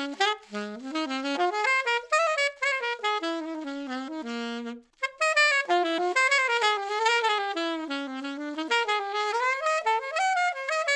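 Alto saxophone with a refaced Meyer 6M mouthpiece playing fast jazz lines. A low note is held briefly about four seconds in, followed by a short breath, then another quick run.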